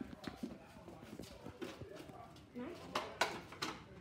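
Hurried footsteps and knocks of a handheld phone being carried on the move, with a quick run of sharper steps about three seconds in.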